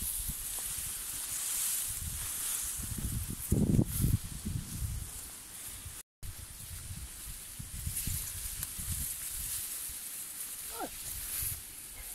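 Wind buffeting a phone microphone in uneven gusts over a steady high hiss, with a brief dropout about halfway through.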